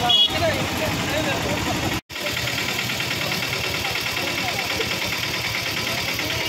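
Street noise: a vehicle engine running near idle under faint, indistinct voices. The sound drops out sharply for a moment about two seconds in.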